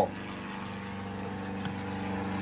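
Steady low machine hum running in the background, growing slightly louder near the end.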